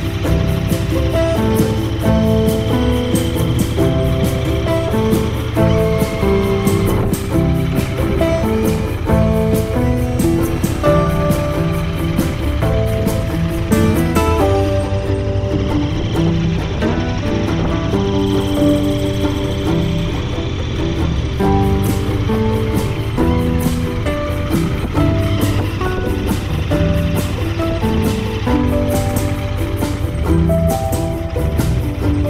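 Background music with a steady beat and melody, with a Royal Enfield Interceptor 650's parallel-twin engine running underneath.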